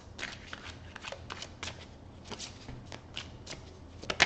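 Tarot deck being shuffled by hand: a run of quick, irregular card flicks and slaps.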